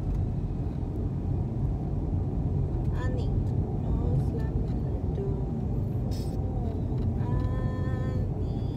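Car driving slowly along a street: a steady low road and engine rumble.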